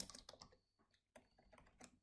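Faint keystrokes on a computer keyboard: a quick run of taps, a gap of about half a second near the middle, then more taps.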